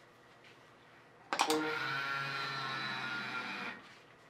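Small electric skein-twisting motor starting with a couple of clicks, then running steadily for a little over two seconds as it twists a hank of yarn on its hooked arm, and stopping near the end.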